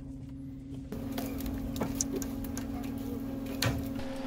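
Steady low mechanical hum of a winch recovery under way, a cable winch and engine running as a stranded pickup is pulled up the slope, with a few scattered clicks and creaks.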